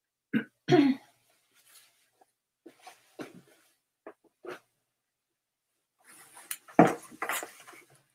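A woman coughing and clearing her throat: two short coughs about a second apart at the start, then more near the end, with soft rustling of clothing being handled in between.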